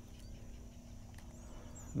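Faint, steady open-air background on a calm marsh channel, with a low hum under it and a brief high chirp near the end.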